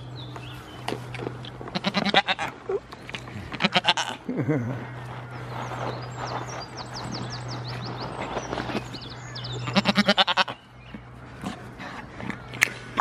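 Goats bleating up close: three quavering bleats, about two seconds in, about four seconds in and near the end, with a shorter low call between the first two. A steady low hum runs underneath.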